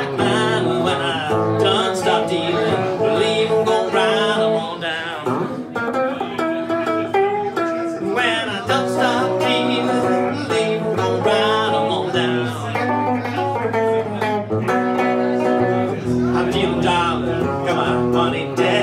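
Amplified Gibson semi-hollow electric guitar playing an instrumental blues passage, picked single notes and chords with bent, wavering notes over a steady low bass line.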